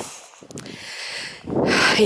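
A pause in speech filled with a faint steady hiss and a couple of light clicks about half a second in, then a short breath drawn in near the end.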